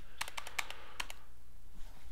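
Computer keyboard keystrokes: a quick run of about eight key clicks in the first second or so.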